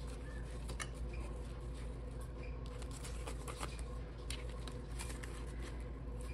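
Paper banknotes being handled: light rustles and scattered small clicks as bills are picked up and moved, over a steady low background hum.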